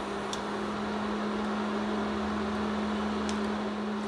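Steady hum with an even fan-like hiss from a switched-on glass-top electric cooktop running at low heat. Two faint ticks, one near the start and one near the end.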